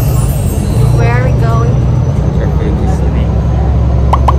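Inside a moving bus: a steady, loud low rumble of the bus's engine and running gear fills the cabin, with brief voice sounds about a second in.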